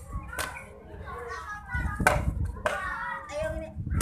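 Young children's voices, talking and calling out at play, louder from about two seconds in, over a low rumble.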